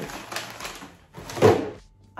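Plastic food packets rustling in a plastic storage basket, then a single thunk about a second and a half in as the basket is set down on a kitchen cupboard shelf.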